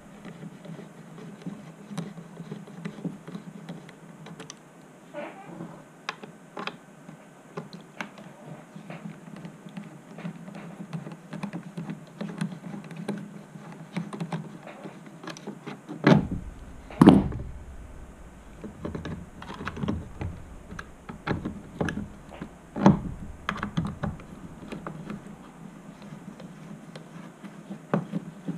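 A hex driver turning small screws out of and back into a 3D-printed plastic gimbal mount, with light irregular clicks and scrapes throughout. A few louder knocks come past the middle as the gimbal is twisted around.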